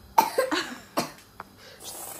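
A young child coughing, a few short coughs in the first second or so, after taking a mouthful of dry cocoa powder.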